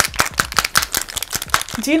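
A KVD Vegan Beauty True Portrait shake-to-mix foundation bottle being shaken hard, rattling in rapid sharp clicks at about nine a second until it stops near the end.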